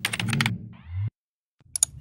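Computer keyboard typing sound effect from a subscribe animation: a quick run of key clicks, then after a short silence a pair of sharp mouse clicks near the end.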